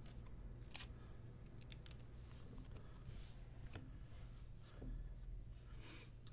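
Faint handling of trading cards: a scattering of soft clicks and taps as the cards are slid and flipped through by hand, over a low steady hum.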